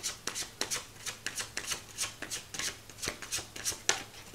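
A tarot deck being shuffled by hand: a quick run of short card snaps and rubs, about four a second.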